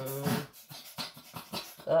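Pet cat vocalizing in a quick series of short cries.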